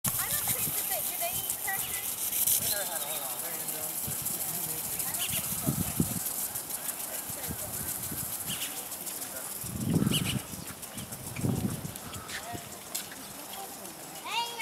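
Steady hiss of water spraying from a sprinkler, with faint voices of people talking. Two low bumps stand out about ten and eleven and a half seconds in.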